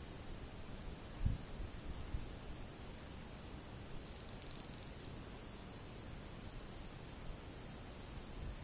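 Faint steady hiss of outdoor background noise, with a few soft low bumps about a second and two seconds in.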